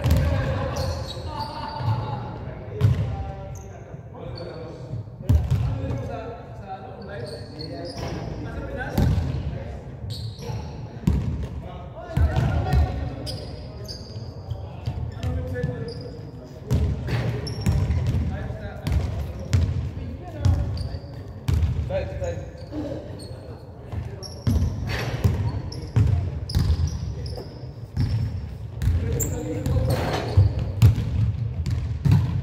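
A basketball bouncing repeatedly on a hardwood gym floor during a game, with players' voices calling out and short high squeaks of sneakers, all echoing in a large hall.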